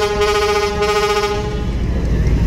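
A river passenger launch's horn sounding one long, steady blast that cuts off about three-quarters of the way through, over a low steady rumble.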